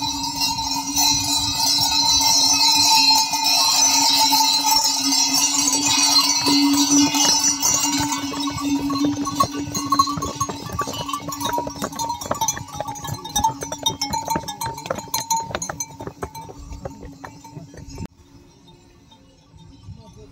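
Bells on a string of pack mules ringing steadily as the animals pass, with clinking and hoof clatter on a stone path. The sound is loudest for the first several seconds, then fades as the train moves off, and drops away near the end.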